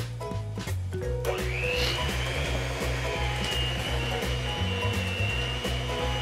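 Electric hand mixer switched on about a second in; its motor whine rises briefly as it spins up, then runs steadily while it mixes flour into the creamed butter and sugar. Background music plays throughout.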